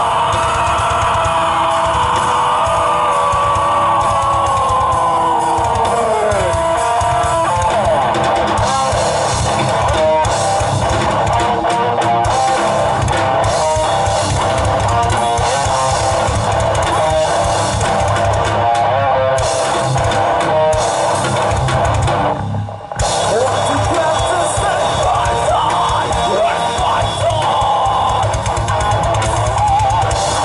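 Heavy metal band playing live through a PA: distorted guitars, bass and a drum kit pounding out a fast, dense rhythm. A long held note slides slowly downward over the first several seconds, and about three quarters of the way through the band cuts out for a split second before crashing back in.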